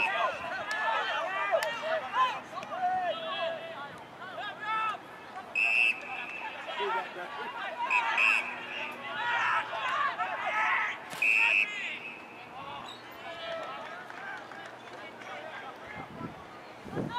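Several short blasts of an umpire's whistle, one near 6 s, one near 8 s and one about 11 s in, over a babble of shouting voices from players and onlookers on an Australian rules football ground.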